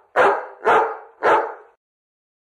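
A dog barking three times, about half a second apart.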